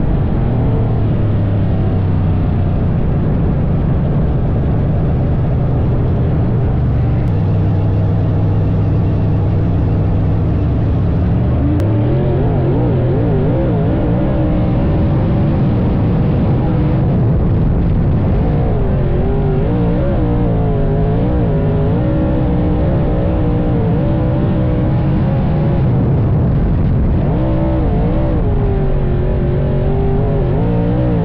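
Dirt late model race car's V8 engine running hard at race speed. Its pitch holds steady for about the first twelve seconds, then rises and falls again and again as the revs swing up and down.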